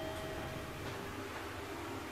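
The ringing tones of a chime dying away in the first moments, over a steady low hum with a faint wavering tone.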